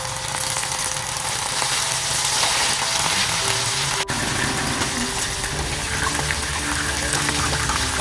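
Masala-coated prawns deep-frying in hot oil in a small saucepan: a steady sizzle, with a momentary break about halfway.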